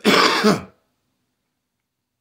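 A man gives one short, harsh throat-clearing cough, about two-thirds of a second long, right at the start.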